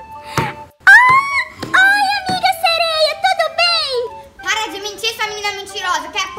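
A child's high-pitched voice making drawn-out, exaggerated vocal sounds with no clear words, over quiet background music. A few short knocks sound in the first two seconds.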